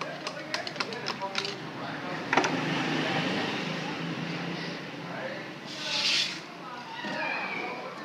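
Metal parts of a VE distributor diesel injection pump being handled as its drive shaft is pushed into the pump housing: a quick run of light clicks, then a sharper knock about two and a half seconds in, with handling noise and a brief hiss near the end.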